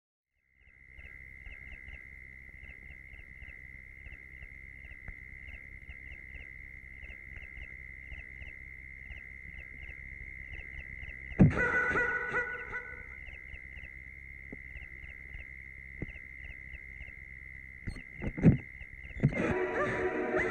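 Horror film soundtrack: a steady high eerie tone with small chirps repeating over a low hum, broken by a sudden loud hit that rings on briefly about halfway through. A few more sharp hits come near the end, and music swells in.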